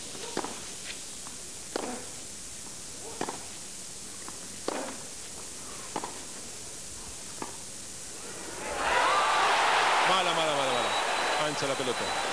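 Tennis ball struck back and forth in a rally on a clay court: six crisp hits about 1.4 s apart. Near the end, as the rally ends on a close ball called out, the stadium crowd breaks into loud shouting and whistling.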